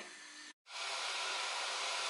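Pancake batter frying in a pan: a steady sizzle that starts after a brief dropout about half a second in.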